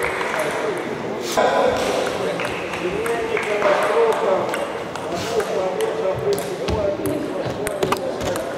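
A table tennis rally: the ball clicks sharply off the bats and the table in quick succession, with voices talking in the background.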